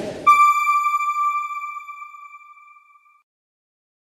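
Broadcast logo sting: a brief whoosh, then a single bright electronic ping that rings on and fades out over about three seconds.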